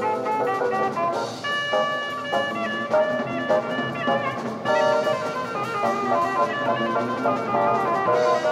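Jazz-fusion band recording: horn lines on trumpet and saxophone over a drum kit, with cymbal washes coming in about a second in and again just past halfway.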